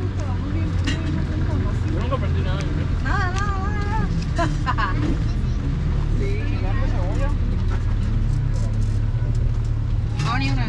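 Indistinct voices talking quietly, a few short phrases, over a steady low rumble that runs unbroken throughout.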